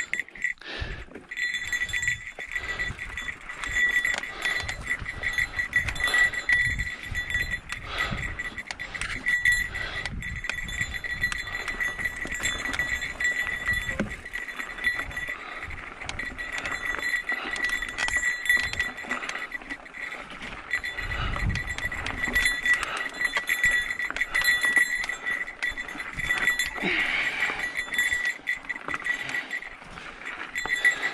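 A small bell jingling steadily and unevenly on a mountain bike riding over a rocky dirt trail. Gusts of low rumble from wind and trail jolts come and go beneath it.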